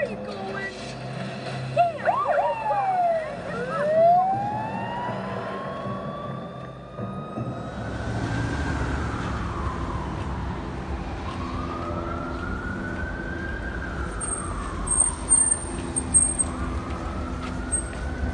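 An emergency vehicle's siren wailing, a tone that rises and falls slowly every four to five seconds, over street traffic noise, starting about seven seconds in. Before it, a film soundtrack with quick sliding tones.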